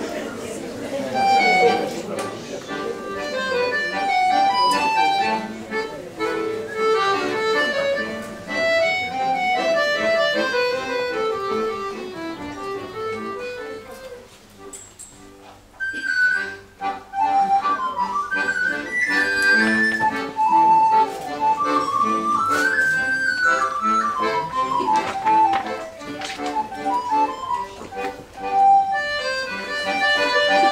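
Piano accordion playing a lively folk dance tune. A small end-blown flute comes in about halfway through, carrying a high melody over the accordion.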